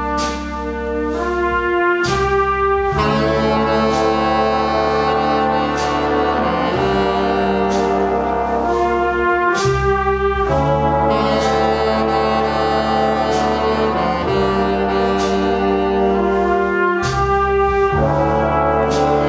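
A jazz big band playing a slow ballad: brass and saxophone sections hold sustained chords that change every second or two. A sharp percussive stroke falls about every two seconds.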